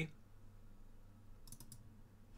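A quick run of a few computer mouse clicks about one and a half seconds in, over a faint low hum.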